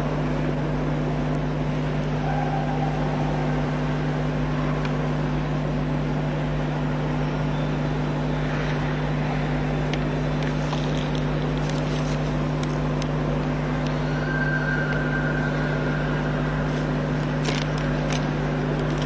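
Steady low electrical hum and hiss of the sound system, with a few faint rustles of paper sheets being handled in the second half.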